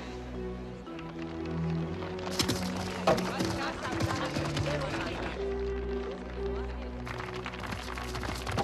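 Film score music with steady held notes, joined from about two seconds in to about five, and again near the end, by a busy clatter and rustle of action sound effects.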